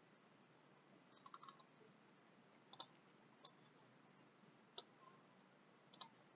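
Computer mouse clicks, faint against near silence: a quick flurry about a second in, then single or paired clicks every second or so.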